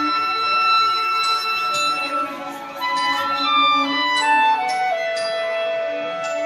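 A chamber ensemble playing contemporary classical music live: a woodwind line of long held notes stepping up and down in pitch, with occasional sharp struck notes over it.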